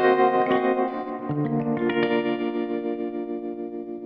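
Music: a few plucked guitar notes, then a chord left ringing and fading out.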